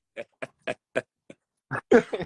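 Men laughing in short breathy bursts, about four a second, loudest near the end.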